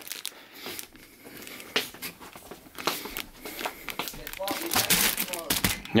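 Plastic-wrapped packs of baby wipes crinkling and rustling as they are carried and set down on a counter, with scattered short knocks. A voice is heard briefly near the end.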